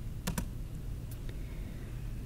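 Two quick, sharp clicks of a laptop key close together, then a couple of fainter clicks about a second later, over a steady low room hum: keys pressed to advance the presentation slide.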